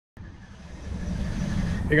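Low outdoor rumble that grows steadily louder, cut short by a man saying "Hey" at the very end.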